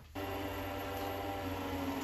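Wood lathe switched on just after the start, then running steadily with flannel and cotton buffing wheels spinning at about 1100 RPM: an even motor hum with a light whirring hiss.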